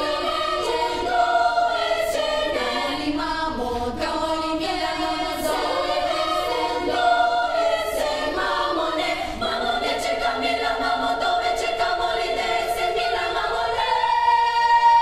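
Girls' choir singing a cappella in several voice parts: a quick run of short notes, settling into longer held chords in the second half.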